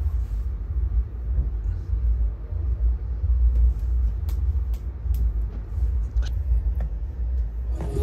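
A low, uneven rumble that swells and dips throughout, with a few faint clicks over it.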